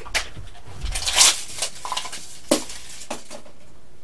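A tape measure being pulled out and handled along a model biplane's wing: a rustling scrape about a second in and a few short clicks.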